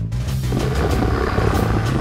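Background music with a steady bass line, and from about half a second in a raspy, rough growl.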